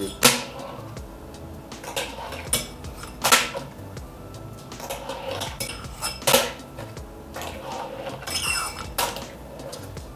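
A fingerboard being ridden by hand on a small curb obstacle: a series of sharp, hard clacks as the board pops and lands on the ledge, with short scraping slides and grinds along its edge between them.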